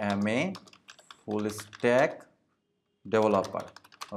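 Typing on a computer keyboard: a run of quick keystrokes.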